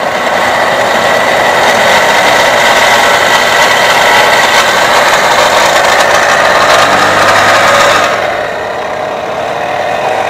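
CRDi diesel engine idling with a steady, high-pitched whirring noise from its belt-driven pulleys, heard up close at the drive belt; it gets quieter about eight seconds in. The noise disappears with the drive belt removed, so it comes from an outside pulley bearing rather than inside the engine, most often the belt tensioner.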